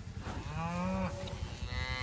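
Beef cow mooing: one low call about half a second in, then a second, higher call near the end.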